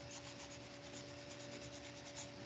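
Faint rubbing with a few light ticks, over a low steady hum.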